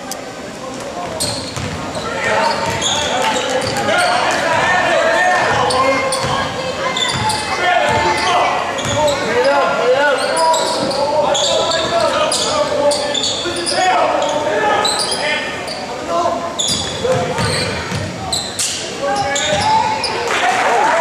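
Basketball game in a gymnasium: background voices of players and spectators talking and calling out, with a basketball bouncing on the hardwood court, echoing in the large hall. The sound grows louder about two seconds in.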